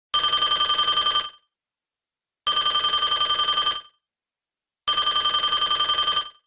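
A bell ringing in three rings of a little over a second each, about two and a half seconds apart, each a rapid even trill.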